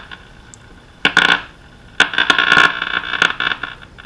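Buzzing, crackling interference noise from the speaker of a Silvertone Companion 1704 tube radio, in two bursts: a short one about a second in and a longer one from about two seconds to past three. It sounds like a dimmer switch: electrical interference that the restorer thinks is coming in partly through the antenna lead.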